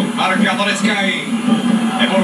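A man speaking without a break, a football commentator's voice heard off a television.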